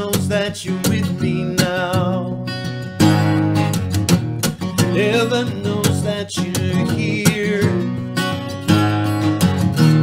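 A man singing with vibrato over his own acoustic guitar, which plays a picked, repeating riff under the melody.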